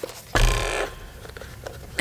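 Handling noise from the plastic case of a FrSky Tandem X20S radio transmitter as it is turned over and worked at its rear access panel: a short rubbing rush of about half a second, then a few faint clicks.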